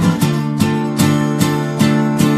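Acoustic guitar strumming chords in a steady rhythm, about two and a half strokes a second, with no singing.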